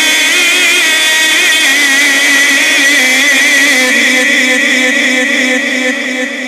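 A man reciting the Quran in the melodic, maqam-based style, holding one long note with wavering ornaments in the pitch. The note fades out near the end.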